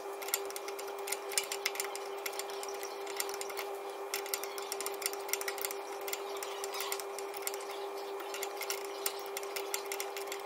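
Steel spanner clicking and clinking on a seized-then-freed NOx sensor as it is wound out of the exhaust downpipe, many quick irregular clicks, over a steady background hum.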